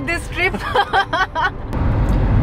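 A voice talking over the low road rumble inside a moving car. Near the end it cuts to a louder, steady cabin rumble.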